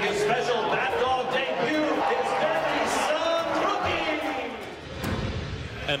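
A ballpark public-address announcer calling out over the stadium loudspeakers, his words long and drawn out.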